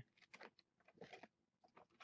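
Near silence, with a few faint, brief rustles, about a second apart, of trading cards being slid through the hands during a pack break.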